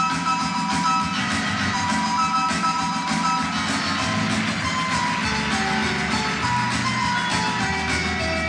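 Instrumental music with a melody line over a steady accompaniment, a deeper bass part coming in about five seconds in.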